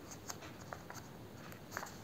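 Chart paper rustling and crackling softly as a folded origami cube unit is creased and handled between the fingers, with a handful of faint, short crackles.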